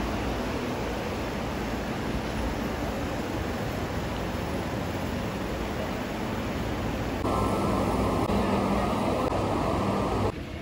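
Steady outdoor background rush, like wind and distant traffic, with no single clear source. About seven seconds in it jumps to a louder, duller rush.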